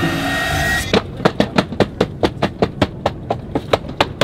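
A child kicking the back of an airliner seat over and over: rapid, even thuds about five or six a second, starting about a second in after a brief steady hiss.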